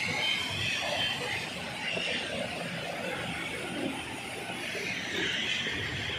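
Heavy rain pouring down, a steady dense hiss of falling water, with a vehicle driving along the wet road through it.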